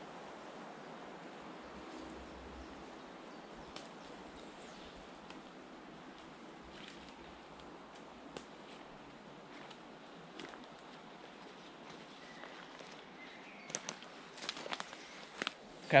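Quiet woodland ambience, a steady soft hiss with the odd faint snap. Near the end, footsteps crunching and rustling through bracken and undergrowth come close, growing louder.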